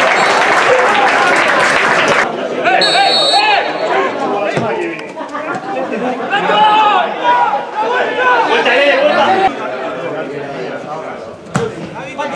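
Many voices shouting and talking over one another at a football match, loudest in the first two seconds. A short, high whistle blast comes about three seconds in, and a single sharp knock near the end.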